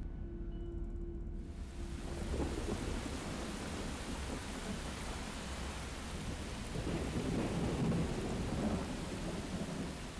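Rain falling in a thunderstorm, with thunder rumbling low underneath. The hiss of the rain comes in about a second and a half in, and the rumble swells twice, the second time near the end.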